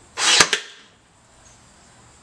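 A Ryobi cordless nail gun fires once, about a quarter second in: a single sharp bang with a snap, over in under half a second.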